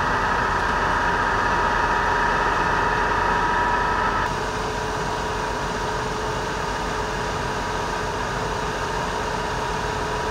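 Fire apparatus engines running steadily at a working fire, a constant mechanical drone with a fixed whine. About four seconds in, the higher whine drops away and a lower steady hum carries on.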